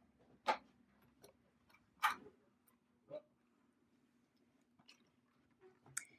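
Faint, sparse knocks and ticks of a household iron being pressed and shifted on fabric over a cushioned pressing mat, the clearest about half a second and two seconds in, while fusing fusible web to the fabric.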